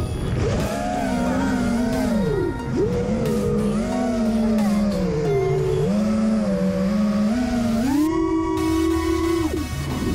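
FPV quadcopter's brushless motors whining, the pitch stepping and gliding up and down with the throttle, over a steady low rush of prop wash and wind. Near the end the whine jumps up and holds a higher pitch, then drops away.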